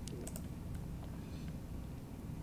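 A few faint clicks at a computer's mouse or keys, mostly in the first second, over a low steady hum.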